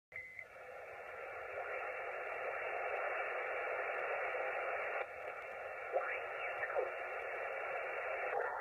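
Yaesu FT-897 HF transceiver's receiver audio in lower sideband as the dial is tuned across the 40 m amateur band: steady band hiss, with whistling tones sweeping up and down about six seconds in as the tuning passes over signals.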